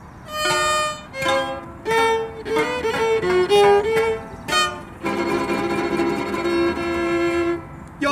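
Huasteco trio playing an instrumental introduction: violin leading the melody over a strummed jarana and huapanguera. The music starts about half a second in, and a long held violin note runs through the last few seconds.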